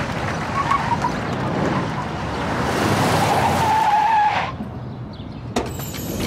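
A car driving up and skidding to a stop, its tyres squealing, ending suddenly about four and a half seconds in. A sharp click follows about a second later.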